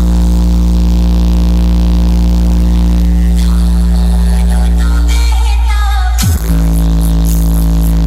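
Very loud electronic DJ track from a truck-mounted speaker stack: a steady deep bass drone with held tones above it. About six seconds in a quick falling sweep breaks it, and then the drone starts again.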